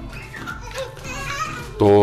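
Faint children's voices in the background, high and wavering, with a man's voice saying a single word near the end.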